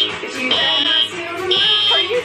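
Fire alarm sounding: a high-pitched beep about half a second long, repeating about once a second, over music.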